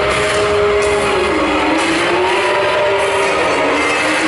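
A Ferrari engine on a film soundtrack, played back through an attraction's speakers, its pitch rising and falling slowly as the car drives.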